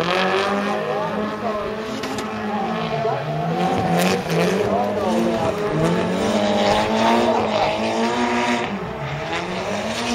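Nissan S13 Silvia drift car's engine at high revs, the pitch dropping and climbing again twice as the throttle is worked through the slide, with the tyres squealing.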